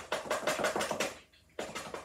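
A plastic acrylic paint bottle being knocked down hard against the table several times in quick succession, to drive the paint into its uncut tip. There is a short pause, then a few more knocks near the end.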